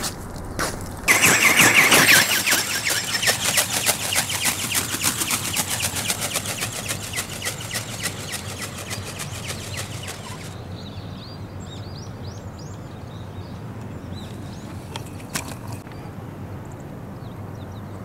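Battery-electric motor and gear drive of a large dragon-shaped ornithopter starting abruptly and running with a rapid clatter that pulses with the wingbeats, fading as it flies away, then cutting off suddenly about ten seconds in.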